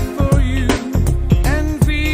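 Music: a pop/R&B-style Christmas song with a steady drum beat and a singing voice.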